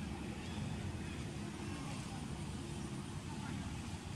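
Steady low background rumble with an even hiss above it, with no distinct animal calls or sudden sounds.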